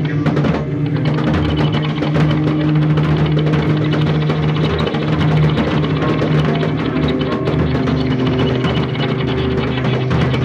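A rock band playing live: a drum kit hitting steadily with cymbals, under loud, sustained low notes that hold for a second or more at a time.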